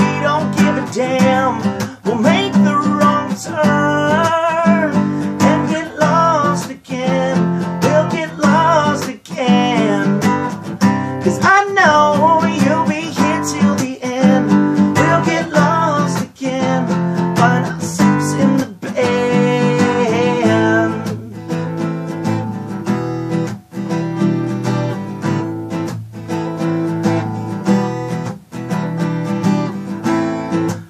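Acoustic guitar strummed in a steady rhythm, with a man singing over it for much of the time.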